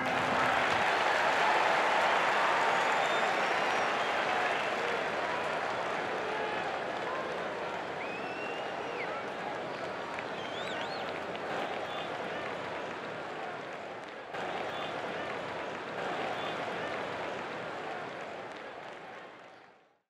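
Stadium crowd applauding and cheering, with a few short whistles, slowly dying down and fading out at the end.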